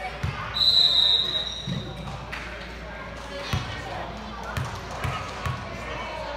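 A referee's whistle gives one short, high blast about half a second in, the loudest sound here. Then a basketball is bounced several times on the hardwood gym floor as a player dribbles at the free-throw line, over spectator chatter in the gym.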